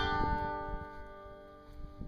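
Banjo music ending on one plucked chord that is struck at the start and rings out, slowly fading.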